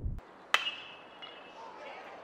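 A metal baseball bat strikes a pitched ball about half a second in: one sharp ping with a brief ringing tone. It is solid contact on a fly ball that carries over the wall for a home run.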